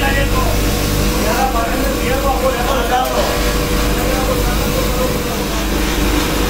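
Electric motor spinning a polishing wheel, running with a steady hum, with the hiss of a steel cutlery piece pressed against the wheel's rim. Voices talk over it in the first half.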